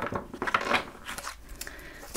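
A thick deck of oracle cards being shuffled by hand, the cards sliding and flicking against each other in quick, irregular clicks.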